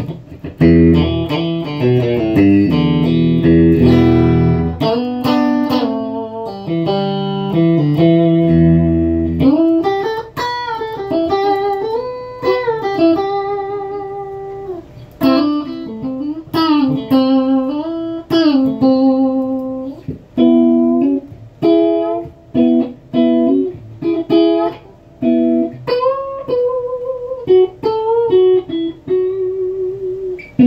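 McLguitars Silverback S-style electric guitar played with a clean tone: chords with low bass notes for the first nine seconds or so, then single-note melodic lines with string bends.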